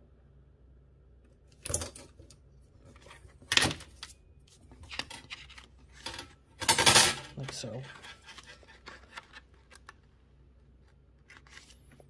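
A metal meter stick clattering and knocking against the desk and cardstock as it is moved and set down, with paper being handled. There are a few separate sharp knocks, the loudest cluster a little past halfway.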